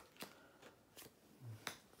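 Three faint clicks of playing cards being dealt one by one off the deck, almost silent in between.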